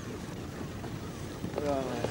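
Wind and sea noise aboard a boat at sea, with a voice heard briefly near the end.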